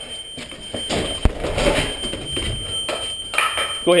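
A single sharp impact about a second in, a door being kicked. A steady high-pitched tone sounds throughout.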